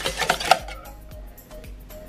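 A wire whisk clicks against a stainless steel bowl while stirring batter, the last and loudest click about half a second in. After that the stirring falls away and faint background music is left.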